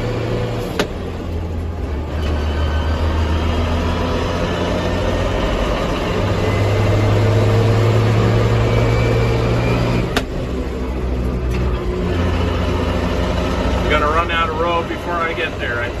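JCB Fastrac 3185 tractor's diesel engine running under load at road speed, heard from inside the cab as the tractor picks up speed. The engine note steps in pitch several times, and there are two short sharp clicks, about a second in and about ten seconds in.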